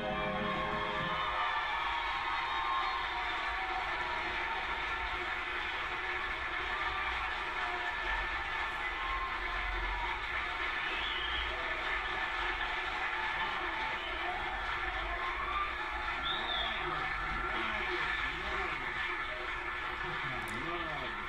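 Studio audience applauding and cheering as the dance music ends about a second in; the applause then carries on steadily.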